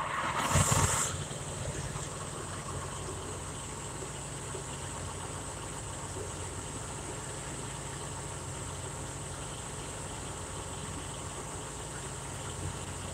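Truck engine idling, a steady low hum heard inside the sleeper cab. A short burst of noise comes about half a second in.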